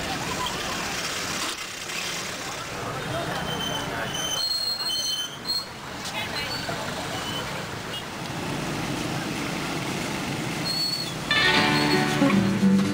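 Busy city street ambience: traffic and crowd voices, with a few short, high beeps from vehicle horns about halfway through. Music starts loudly near the end.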